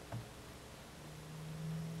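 Quiet room tone with a faint even hiss. About halfway through, a faint low steady hum comes in and grows slightly louder.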